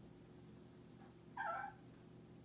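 A Shih Tzu gives one short, whine-like vocal sound about one and a half seconds in, lasting under half a second.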